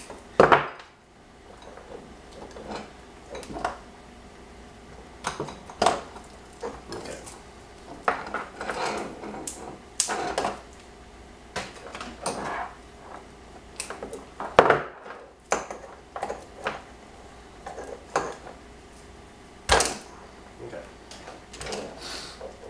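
Hand tools and a wiring harness being handled on a workbench: scattered clicks and knocks as wire cutters and a utility knife are picked up and set down, with rustling of the harness wires between. The sharpest knocks come about half a second in and twice more near the end.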